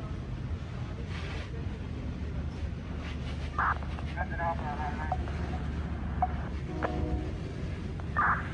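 Steady low rumble of fire apparatus engines running, with a few short, indistinct voices in the middle.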